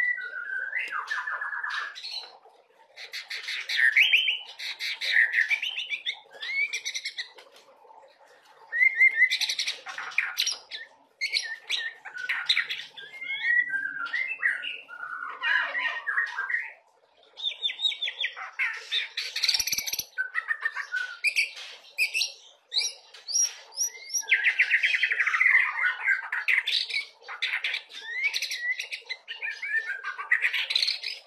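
A white-rumped shama (murai batu) singing its full varied song: loud whistled phrases of a second or two, broken by short pauses, mixing clear notes with rapid trills and chattering filler notes ('isian') picked up from other birds. The singer is a 'trotolan', a young bird moulting into adult plumage, already in full song.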